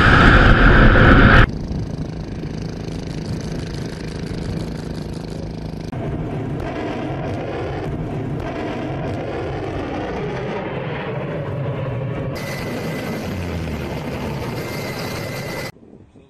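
A loud missile-launch blast in the first second and a half, then a steady rushing noise with a faint low hum from warship footage at sea. It changes at cuts, a thin steady tone joins a few seconds before the end, and the sound cuts off just before the end.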